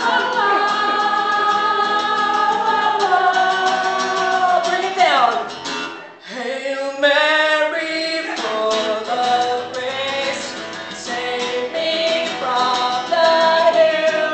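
Live song: a woman's lead voice with a girl's backup voice, over strummed acoustic guitar. Held sung notes slide down about five seconds in, break off briefly, then swoop back up into a wavering note.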